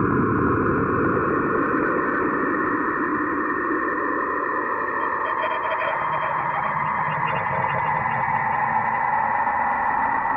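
Ambient electronic music: a hissing, filtered synthesizer texture. Its low end fades about four seconds in while the middle range grows brighter, and faint high tones come in near the middle.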